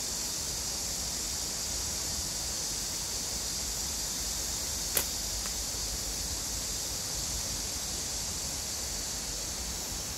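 A single slingshot shot about five seconds in: one sharp snap as the bands are released, followed by a much fainter tick half a second later, over a steady high hiss of outdoor background.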